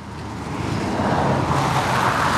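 A road vehicle passing on the street, its engine and tyre noise growing steadily louder over the two seconds.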